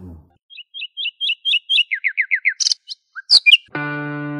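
Bird song: a run of about eight short rising chirps, then five quick falling notes and a few higher calls. Plucked guitar music begins near the end.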